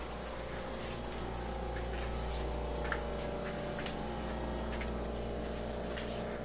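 Steady low hum of room background noise, with a few faint clicks.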